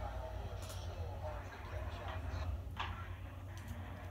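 Quiet room sound with the race broadcast faint from a television: a steady low hum and a faint voice.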